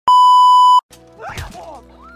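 Loud steady test-tone beep at about 1 kHz, the kind that goes with TV colour bars, held for just under a second and cutting off sharply. Film soundtrack music follows, with a thud about a second and a half in.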